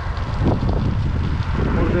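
Wind buffeting the microphone of a camera on a moving bicycle: a steady low rumble.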